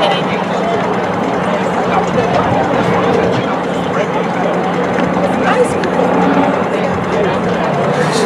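Indistinct chatter of many people talking at once, with no single voice standing out, over a steady low hum.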